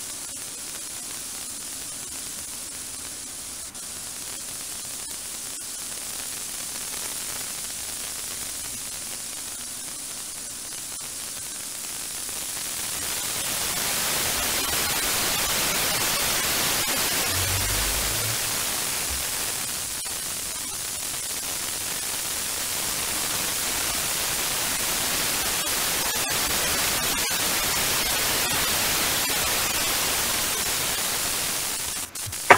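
Radio receiver static: a steady hiss from a software-defined radio tuned to the Soyuz spacecraft's 121.75 MHz voice downlink, with no voice on the channel. The hiss grows louder about 13 seconds in as the spacecraft's carrier fades out of reception.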